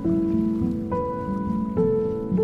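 Slow, soft background music of held notes. A new note or chord comes in at the start, about a second in, and near the end, over a steady rain-like rushing noise.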